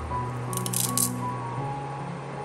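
Lump sugar crystals dropped by hand into a steel saucepan of cereal: a brief rattle of small clicks about half a second in, over background piano music.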